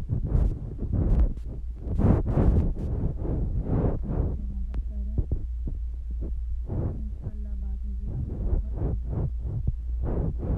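Pencils scratching on paper worksheets with paper rustling, in irregular strokes that are busiest in the first few seconds, over a steady low hum.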